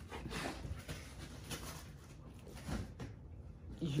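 Cardboard shipping box crackling and tearing in short irregular scrapes as a Great Dane chews and pulls at it, with a soft knock a little past halfway.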